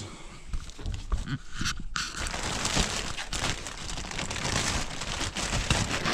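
Plastic bag crinkling and rustling as stacks of paper timetables are pushed into it. It is sparse at first and turns into a dense, continuous crackle from about two seconds in.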